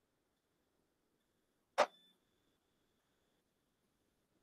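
A single sharp click about two seconds in, with a faint high ringing tone trailing after it for a second or so; otherwise near silence.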